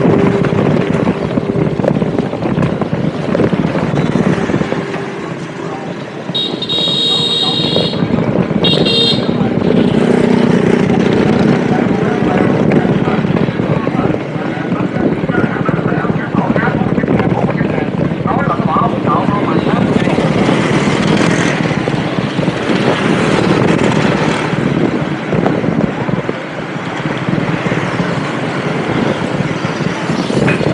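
Riding noise on a moving motorbike: steady engine running with wind and road noise. A vehicle horn beeps twice in quick succession, one longer blast then a short one, about seven seconds in.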